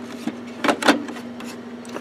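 A few sharp plastic clicks and knocks as an HP inkjet printhead is pushed into the printer's carriage, over a steady low hum.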